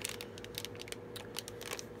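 A plastic cosmetics pouch being handled, giving a run of irregular light crinkles and clicks over a faint steady hum.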